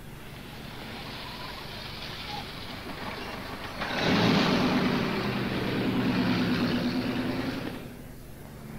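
A 1950s sedan driving along a road, its engine and tyres growing much louder about four seconds in, then cutting off abruptly just before the end.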